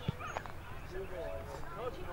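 Indistinct shouting and calling voices across an Australian rules football ground, with a single dull thud about a tenth of a second in.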